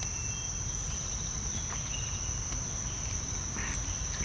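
Steady high-pitched drone of insects, with a low rumble beneath and a few faint clicks.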